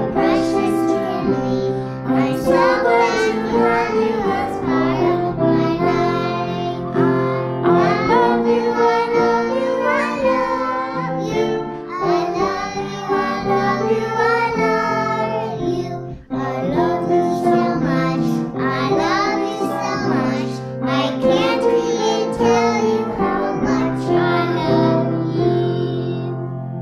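A woman and young girls singing a song together, accompanied by piano, with a short break about two-thirds of the way through.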